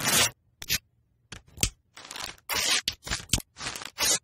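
Cartoon sound effects of small packaging wrappers being torn open: a quick series of short ripping and crinkling noises separated by brief silences.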